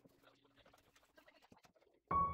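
Near silence: faint room tone with a few small ticks.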